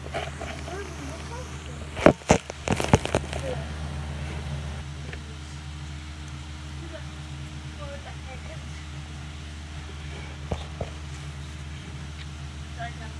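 Handling noise from a phone being moved into place against a glass hamster tank: a quick cluster of loud knocks and bumps about two to three seconds in, and two lighter taps near the end. Under it runs a steady low hum, with faint voices in the background.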